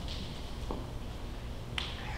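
A single sharp finger snap near the end, after a fainter click, over a steady low hum.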